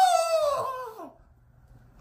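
A man's voice drawing out one high syllable that slides slowly down in pitch and fades out about a second in.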